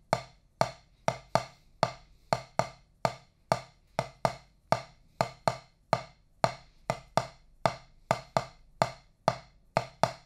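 A drumstick tapping a practice pad, one stick playing the repeating Nañigo 6/8 bell pattern. The strikes are sharp and dry, in an even, uneven-spaced cycle.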